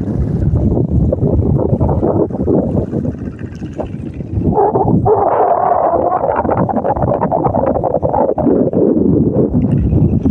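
Wind buffeting a phone microphone: a loud, steady rumbling rush that dips briefly about three seconds in, then comes back stronger and brighter from about halfway on.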